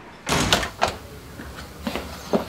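A wooden door being handled and opened: a sudden clunk about a third of a second in, then two sharp clicks.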